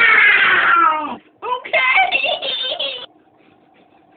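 A child's high voice in sing-song: one long call falling in pitch, then a run of shorter held notes that stops about three seconds in.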